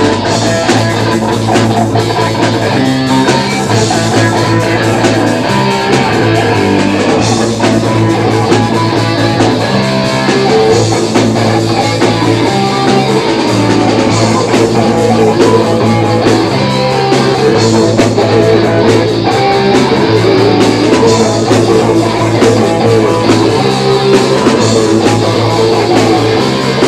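Live punk rock band playing loudly and continuously: electric guitars, bass guitar and drum kit.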